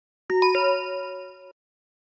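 A two-note chime sound effect: two bell-like dings struck about a quarter second apart, ringing on for about a second and then cut off suddenly.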